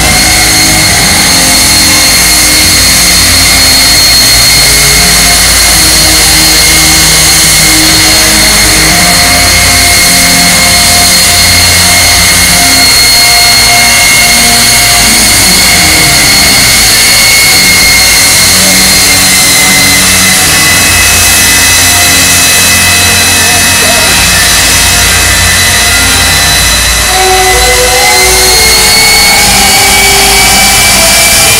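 Jet truck's turbojet engine running loud with a steady high whine over a deep rumble, the whine rising slightly in pitch near the end as the engine spools up.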